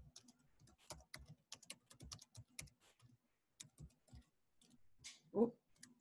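Computer keyboard typing, in quick runs of keystrokes, faint through a headset microphone. A brief louder sound comes near the end.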